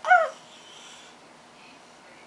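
A house cat gives one short meow right at the start, rising and falling in pitch.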